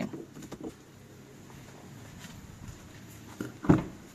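Faint room noise with a few small handling clicks, then one sharp, loud thump near the end.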